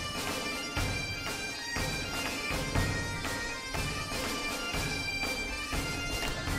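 Background music: a wind-instrument melody over a held drone, bagpipe-like in character, with a steady beat.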